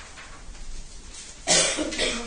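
A person coughs once, sharply and loudly, about one and a half seconds in, after a stretch of quiet room tone.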